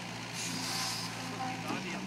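Terex mini excavator's diesel engine running steadily while the arm works, with a short hiss about half a second in.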